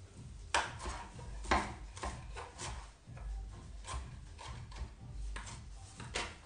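Kitchen knife roughly chopping fresh parsley on a wooden cutting board: a string of irregular chops, the sharpest about half a second and a second and a half in.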